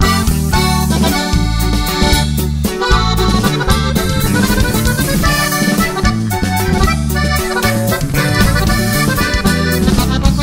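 Norteño band playing a corrido's instrumental introduction, a button accordion carrying the melody over strummed strings and a steady bass line.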